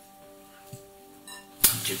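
Faint background music with steady held notes. About one and a half seconds in there is a single sharp knock as the metal salad bowl is gripped and moved on the table.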